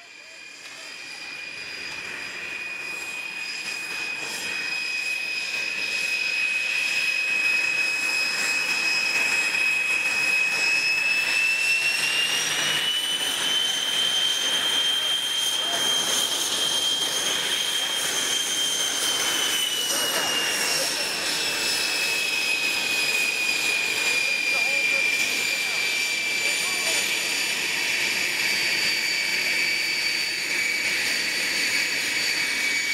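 Aero L-29 Delfin's single turbojet whining as the jet taxis, growing louder over the first few seconds. The whine climbs in pitch about a third of the way in as the engine spools up, holds there, then sinks back a little after two-thirds of the way through.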